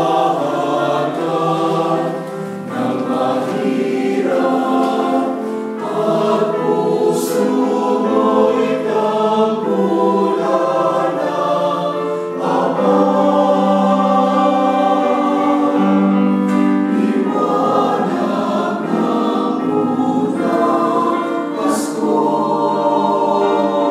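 Mixed choir of men and women singing in several parts, holding long chords phrase after phrase, accompanied on an electronic keyboard.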